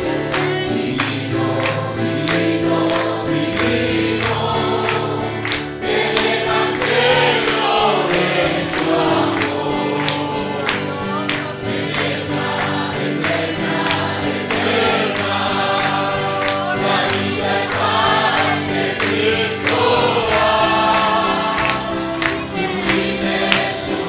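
A congregation singing a gospel song in chorus and clapping along on a steady beat.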